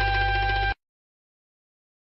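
A song's held closing chord, steady with a strong bass, cut off abruptly under a second in and followed by dead silence: the gap between two tracks.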